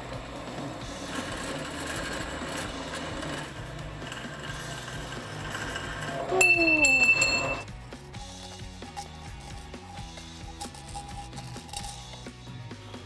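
Metal-cutting bandsaw running through an aluminium tube, with background music. About six seconds in, the cut comes through and there is a loud metallic clink and ringing that lasts just over a second, with a falling pitch under it. After that it is quieter.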